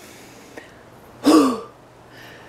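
A person's short, loud voiced breath out, falling in pitch, about a second and a quarter in. It is one of a run of evenly spaced breaths from someone out of breath walking uphill under a heavy load.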